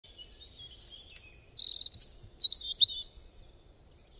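Birds chirping and whistling: many quick high-pitched calls and a rapid trill, fading out near the end.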